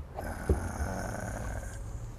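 A person's long, breathy intake of air, about a second and a half of hiss, with a short low knock about half a second in.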